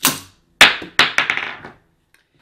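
Spring-loaded mini projectile launcher firing with a sharp snap, then its 16 mm steel ball striking a hard surface and bouncing, the bounces coming quicker and fading away.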